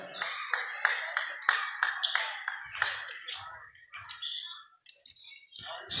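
Rhythmic hand clapping in a gymnasium, about three claps a second for nearly three seconds, then faint scattered voices and noise.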